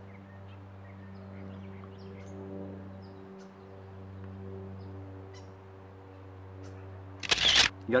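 Steady low electrical hum with faint, scattered bird chirps in a garden. A short, loud burst of noise comes about seven seconds in.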